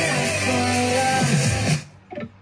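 Band music with guitar and drums playing through a Marshall Emberton portable Bluetooth speaker, cutting off suddenly near the end.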